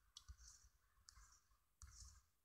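Near silence with a few faint, scattered clicks, made while working the on-screen eraser on a digital whiteboard.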